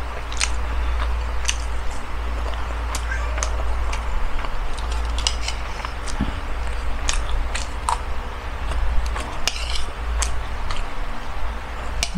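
Eating sounds: a fork clicking and scraping on a plate, and chewing, heard as scattered small clicks over a steady low hum.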